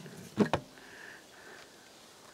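Two quick knocks close together about half a second in, as a bar stool is lifted off a wooden table.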